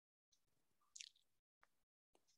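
Near silence: faint background noise, with one brief faint click about a second in.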